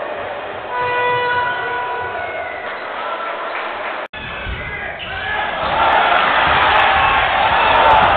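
Basketball game sound in an arena: crowd noise with a basketball bouncing on the court, and a steady held tone for about two seconds near the start. After a sudden cut about four seconds in, the crowd is louder, with voices shouting and cheering.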